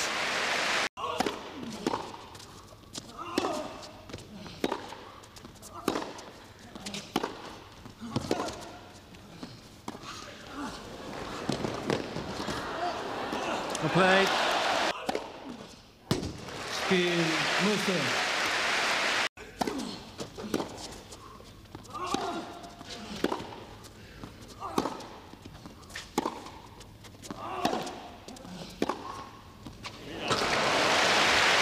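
Tennis rally on an indoor carpet court: rackets striking the ball and the ball bouncing, heard as a run of sharp separate hits. Crowd applause swells between points, at the very start and again about two thirds of the way in.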